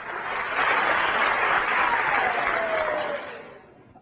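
Audience applause that swells early, holds, then dies away near the end, with a single falling tone sounding through it in the middle.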